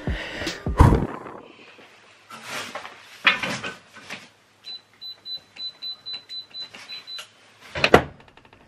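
A couple of sharp knocks in the first second, then a safe's electronic keypad beeping once for each key pressed: a quick run of short high beeps, about four a second, for two to three seconds. A clunk follows near the end as the safe's handle is turned to open it.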